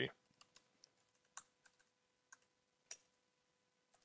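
Faint, scattered keystrokes on a computer keyboard, about eight separate clicks at an uneven pace, as a terminal command is typed.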